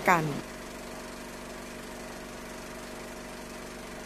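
A steady low hum of several held tones at an even, unchanging level, after a woman's announcing voice ends in the first half-second.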